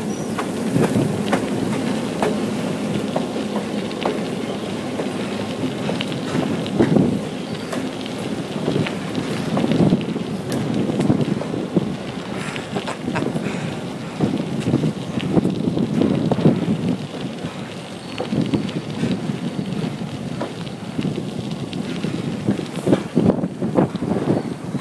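Wind buffeting the microphone of a moving bicycle rider, over the steady low running of a diesel locomotive alongside, with scattered small clicks and crunches from the tyres on the gravel trail.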